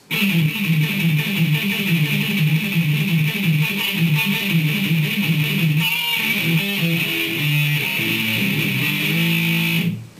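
Distorted electric guitar playing a fast, palm-muted pentatonic lick of rapidly repeated low notes, changing to longer held notes in the last few seconds.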